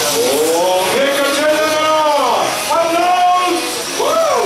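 Mikado Logo 700 radio-controlled helicopter flying aerobatics, the whine of its rotor and motor sliding up and down in pitch as it manoeuvres, with a sharp drop and recovery a little past two seconds in.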